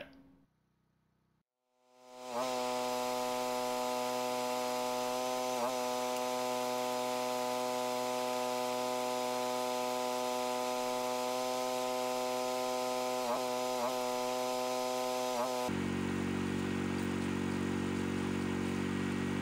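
Electric drum drain cleaner switching on about two seconds in and running with a steady motor hum as its cutter-tipped cable spins into a leach field pipe. The pitch dips briefly a few times as the motor takes load, and near the end the sound turns deeper.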